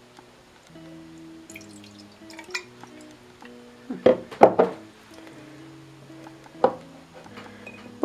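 Soft background music, with a cluster of glass knocks and clinks about four seconds in and one more near seven seconds as a glass bottle and a glass jar are set down and handled on a counter.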